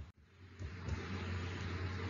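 A faint click, then a steady low hum with a hiss of background noise that fades in about half a second later.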